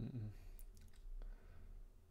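A few light computer mouse clicks, about half a second in and again a little after a second, as an SQL query is re-run in phpMyAdmin.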